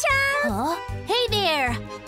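Excited, high-pitched children's voices whooping and squealing in gliding cries, over cheerful background music with a steady beat.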